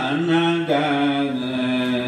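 A man's voice chanting into a microphone in long held notes, stepping down to a lower note partway through.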